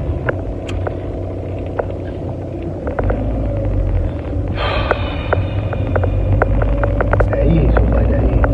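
Steady low road and engine rumble inside a moving car's cabin, with scattered light clicks and rattles. About halfway through, a steady higher-pitched tone with overtones joins in and holds.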